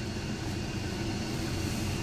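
Steady low hum and hiss of background noise, even throughout, with no distinct knocks or clicks.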